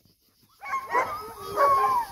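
German Shepherd whining and yipping in high, wavering calls that start about half a second in, eager to search after the search command.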